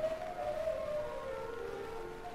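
A cantor singing one long held note that slides slowly downward in pitch.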